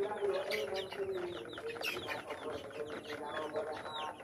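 A flock of chicks peeping, many short falling chirps overlapping without a break, with lower, steadier hen clucking underneath.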